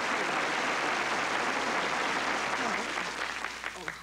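Audience applauding, tapering off near the end.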